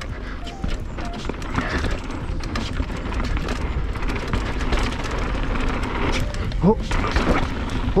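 Polygon Siskiu N9 full-suspension mountain bike rolling fast down a dirt and gravel trail: a steady low rumble of tyres and wind, with frequent sharp clicks and rattles from the bike over the bumps.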